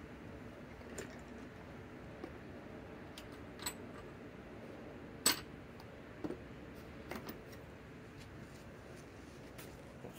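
Scattered light metallic clicks and clinks of sockets and hand tools being handled, a handful spread over several seconds with the loudest about five seconds in, over faint steady background noise.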